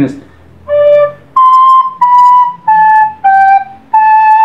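Plastic soprano recorder playing a short phrase of separately tongued notes: a low D, then a jump up to high C and a step down through B, A and G, ending on a longer held A.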